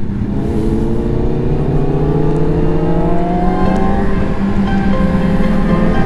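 Inline-four sport-bike engine heard from on board, pulling through a gear with its pitch climbing slowly for about four seconds, then holding steady, over wind and road noise.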